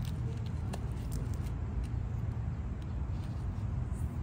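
Steady low outdoor background rumble with a few faint clicks.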